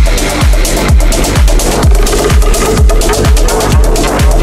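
Techno music from a DJ mix: a steady four-on-the-floor kick drum, about two beats a second, with hi-hats over a sustained bass. A held synth note comes in about halfway through.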